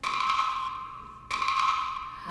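Two identical bright, pinging bell-like tones, struck about a second and a quarter apart, each fading out. They are a sound effect cut into the dance showcase's music mix.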